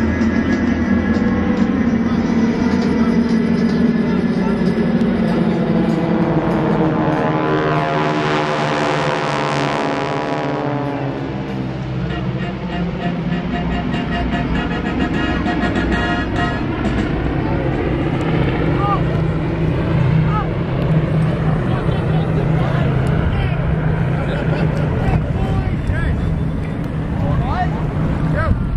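Formation of six GEICO Skytypers North American SNJ radial-engine propeller planes droning steadily as they fly past overhead. The engine note sweeps and shifts in pitch about a third of the way in as the formation passes.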